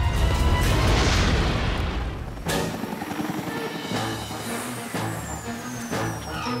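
Cartoon sound effects over orchestral score: a loud, dense rumbling boom for about two seconds, cut off by a sharp hit about two and a half seconds in, then music with a thin high whistle slowly falling in pitch near the end.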